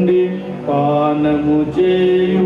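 Male voice chanting a sung Telugu Mass prayer in long held notes over a steady sustained accompanying note, the melody moving to a new pitch about a third of the way in.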